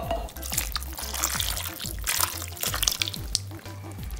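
Water being poured from a cup into a crock pot full of beans and potatoes, splashing and trickling irregularly, under background music.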